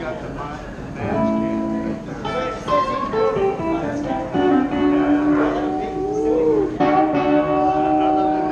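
Electric guitar played solo on stage, picking single notes and chords that ring out. It gets louder about a second in, and some notes slide up and down in pitch.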